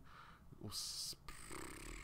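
A man's short, faint breath, a hissing in-breath about halfway through.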